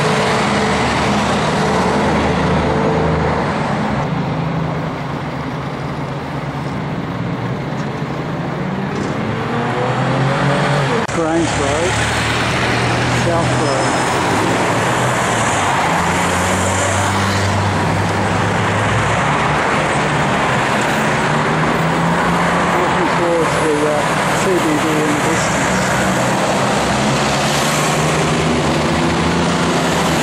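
Busy multi-lane urban road traffic: car and truck engines and tyre noise from passing vehicles, steady throughout, dipping slightly around five seconds in.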